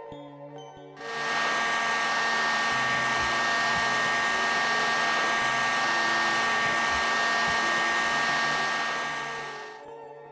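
Electric heat gun blowing steadily on a potassium permanganate-dipped TLC plate to develop the stain, its fan noise carrying a steady whine. It switches on abruptly about a second in and fades away near the end.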